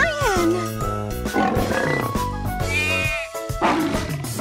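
Upbeat children's song backing music. A cartoon voice calls "Lion!" at the start, its pitch rising and then falling, and a short, rough animal-like vocal sound follows about a second and a half in.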